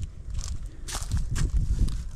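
Footsteps on a leaf-strewn dirt trail, about four steps at a walking pace, over a low rumble on the microphone.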